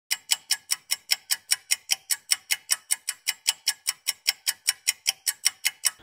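Fast, even ticking, about five sharp ticks a second, like a clock or timer.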